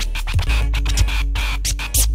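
Hip hop instrumental break: turntable scratching over a drum-machine beat with deep, heavy bass, with no rapping.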